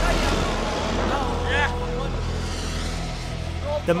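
An SUV driving fast past on a loose, dusty dirt road, its engine and tyres giving a low rumble that eases after about a second as it moves away. Spectators' voices call out over it.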